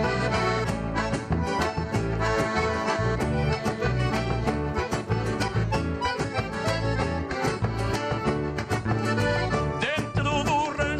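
Button accordion playing an instrumental passage of gaúcho folk music, with guitar and a drum keeping a steady beat.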